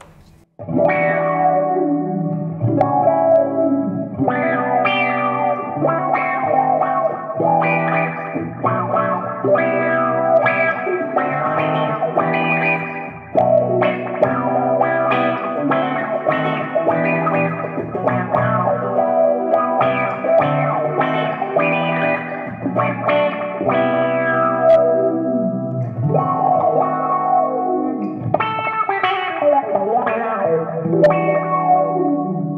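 Electric Gretsch hollow-body guitar played through an MXR Bass Envelope Filter pedal with its decay knob turned all the way down: a continuous run of picked notes and chords, each shaped by the envelope filter's sweep. The playing starts about half a second in.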